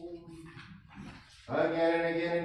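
Unaccompanied Orthodox church chant: a held note dies away, a short pause follows, then voices come in loudly on a new phrase about one and a half seconds in.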